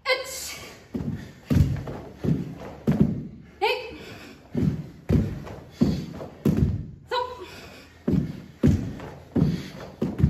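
Bare feet thudding on a wooden dojo floor as two karateka kick and step, about three thuds after each count. A woman's short shouted counts come about every three and a half seconds, with the sound echoing in a large hall.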